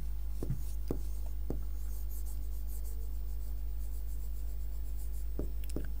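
Marker pen writing on a whiteboard: faint short strokes with a few light taps of the pen tip, over a steady low hum.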